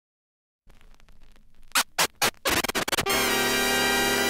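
Record scratching: faint crackle, then three loud back-and-forth scratches and a quick stuttering run of scratches, leading into a loud held musical chord about three seconds in.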